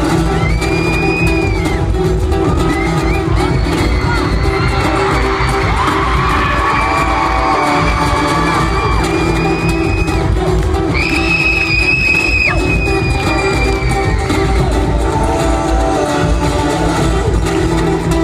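Live music through a concert PA, with a steady acoustic-guitar loop, recorded from the audience. The crowd cheers over it, with long high-pitched screams, loudest just past the middle.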